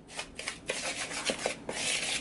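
Metal spoon stirring dry graham cracker crumbs and flour in a mixing bowl: repeated gritty scraping strokes, with a few light knocks of the spoon against the bowl.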